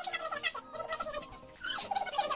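Young women's voices chattering, dropping back for about a second in the middle and picking up again near the end.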